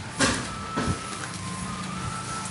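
A steady low mechanical hum with a faint high whine over it, and two short noises in the first second.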